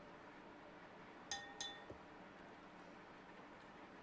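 A metal spoon clinks twice against the side of a water glass, about a second and a half in, the glass ringing briefly after each clink.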